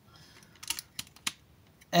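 A few sharp clicks and light rattling from the plastic parts of a Baiwei TW-1103 Jetfire figure, as a side-thruster piece is slid down into its slots and tabbed in.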